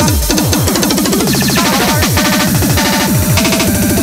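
Hardcore/breakcore electronic track at 200 BPM: fast, distorted kick drums that each drop sharply in pitch, several a second, under a dense, noisy upper layer.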